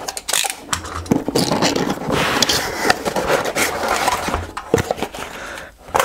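Cardboard shipping box being opened by hand: cardboard scraping and rustling as the flaps are pulled apart, with several sharp knocks.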